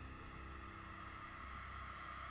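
Faint, steady low drone from a film soundtrack, starting suddenly and holding unchanged, with a low rumble under a few sustained tones.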